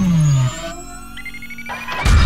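Synthesizer sound effects of a logo sting: a loud tone sweeps down in pitch and cuts off about half a second in, then quieter held and slowly rising synth tones follow, leading into a loud hit at the very end.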